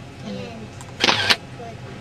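A girl speaking softly, and about a second in a brief, loud hissing noise burst lasting about a third of a second, louder than the voice.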